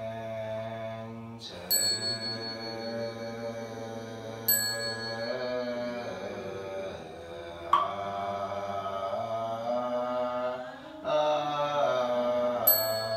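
A monk and a group of lay people chanting a Buddhist liturgy in unison, sustained and sung on held pitches. A small bell is struck twice with a high ringing, about two and four and a half seconds in, and a lower-pitched strike rings out near eight seconds.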